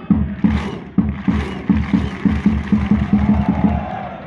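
Football ultras chanting in unison to a beaten drum. The drum keeps a steady beat at about two strokes a second, then quickens to four or five a second in the second half under the crowd's held chant.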